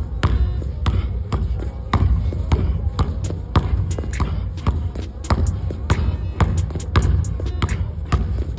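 Basketball being dribbled hard on a gym floor, with sharp bounces about two to three times a second at an uneven pace.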